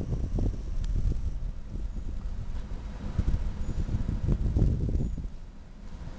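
Wind buffeting the camera microphone: an uneven low rumble with gusty spikes that eases off near the end.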